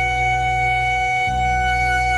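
Background music score: one long, steady held note over a low sustained drone, with no beat.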